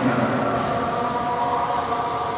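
A man's voice drawn out in long, steady held tones, ringing in a reverberant hall.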